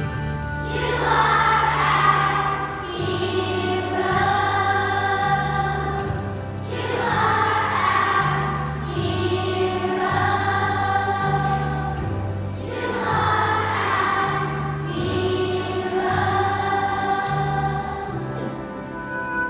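A children's choir singing together over an accompaniment with a stepping bass line, the sung phrases rising and falling about every six seconds.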